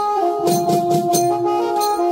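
Banjo-party band playing live: a keyboard carries the melody in long held notes that step downward, over drums and cymbal strikes. The low drums fall away in the second half.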